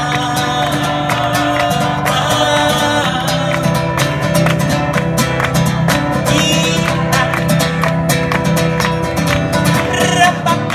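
A male voice singing in phrases over a steadily strummed acoustic guitar, in a live solo performance.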